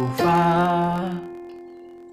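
F major chord (A–C–F) held on a Yamaha arranger keyboard, ringing on and fading away. About a quarter second in, a man's voice sings one held note, the "fa" of the chord, over it for about a second.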